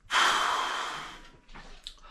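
A man's long, heavy exhale, starting loud and fading over about a second, with a small click near the end.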